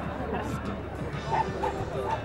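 A dog barking twice in quick short yaps, over crowd chatter and background music.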